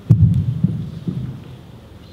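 Three loud, dull, low thumps about half a second apart, the first the loudest, fading out within about a second and a half.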